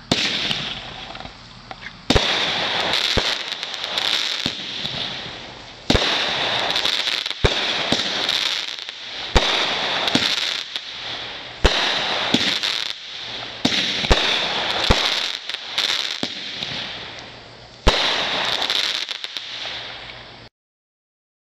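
A Radio Active multi-shot consumer firework cake firing about a dozen shots, one every one to two seconds, each a sharp launch thump followed by a loud hissing, crackling burst in the air that fades over a second or two.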